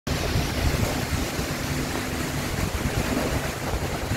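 Strong storm wind rushing through trees, with heavy, irregular wind buffeting rumbling on the microphone.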